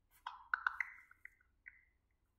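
ChatGPT voice mode's processing sound played through a phone speaker: a quick cluster of short, pitched plinks, then a few sparser single notes. It signals that the assistant is working on a request, here a web search.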